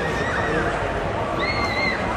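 Horses whinnying: a high, wavering call trails off about half a second in and another starts near the end, over a murmur of voices.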